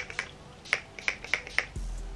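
Fine-mist spray bottle pumped in a quick run of short spritzes, about seven in two seconds. A low hum comes in near the end.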